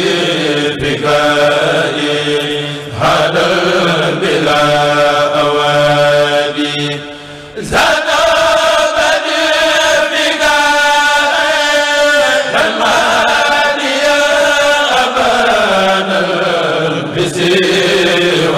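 A men's kurel chanting a Mouride khassida in Arabic into microphones, with several voices together and no instruments, in long held, ornamented notes. The voices break off briefly about seven and a half seconds in, then come back in on a new phrase.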